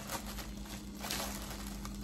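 Clear plastic packaging bag with foam packing peanuts inside, crinkling quietly as it is handled and turned over.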